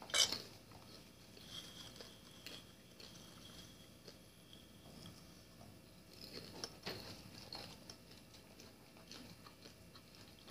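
Faint kitchen handling sounds as limes are juiced by hand into a glass measuring cup: a few soft clicks and knocks, with a couple of sharper ticks about seven seconds in.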